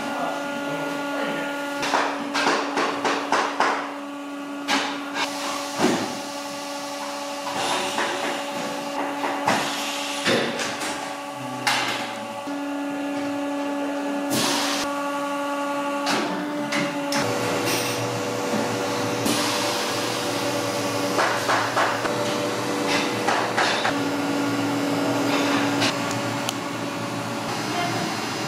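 A marking pen scratching as it traces around a card pattern on sheepskin leather, with the stiff card rustling and tapping as it is handled and moved. A steady workshop hum runs underneath.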